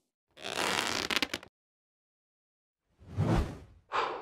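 Whoosh sound effects of an animated logo: a swish that ends in a few quick clicks within the first second and a half, then dead silence, then a second swelling whoosh with a low thud just past three seconds.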